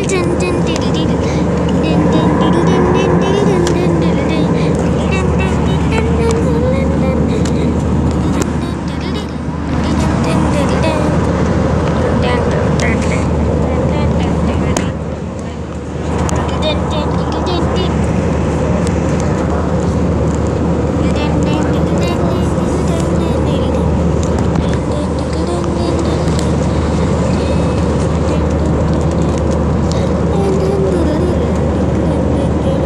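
Steady drone of an Airbus A320-200's cabin in flight, engine and airflow noise, dipping briefly about halfway through. Indistinct voices and music sit over it.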